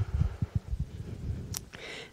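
Microphone handling noise: a run of soft, irregular low bumps in the first second, then a single sharp click about one and a half seconds in, as a small book is picked up and handled close to the microphone.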